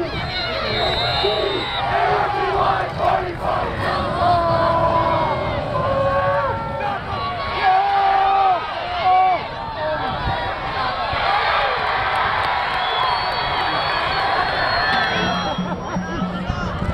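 Football crowd cheering and shouting during a play, many voices overlapping.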